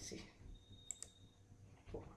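A computer mouse clicking twice in quick succession about a second in, against quiet room tone.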